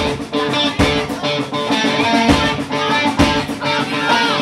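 Live rock band playing loud, with distorted electric guitar over drums keeping a steady beat.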